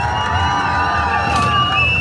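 Arcade basketball hoop-shooting machine playing its electronic game sound: a chord of steady tones held for about a second and a half.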